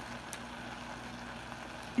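A faint, steady low hum over a light background hiss, with one small click about a third of a second in.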